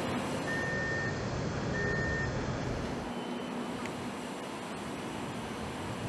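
Shipyard gantry crane's warning alarm beeping, two long high beeps about a second apart, over steady outdoor yard noise and low rumble.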